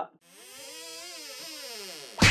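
Electronic intro sting: a single synthesized tone that glides up in pitch and then back down over about two seconds, with a faint hiss above it.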